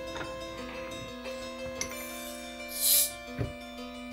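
Background music, with a short sharp hiss about three seconds in as the crown cap is pried off a bottle of strong Belgian beer, followed by a light knock.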